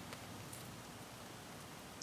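Near quiet: faint room hiss, with one light tick at the very start.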